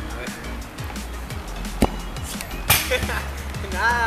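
Background music with a singing voice over it, broken by a sharp knock a little under two seconds in and a louder, noisier thud about a second later.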